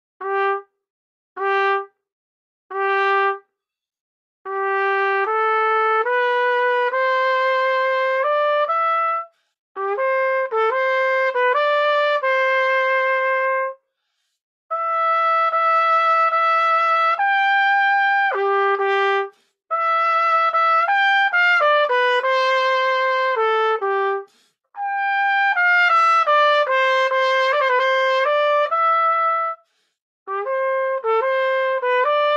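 Solo trumpet playing: three short separate notes on the same pitch, then five longer phrases of held notes moving up and down through the middle register, with short pauses between the phrases.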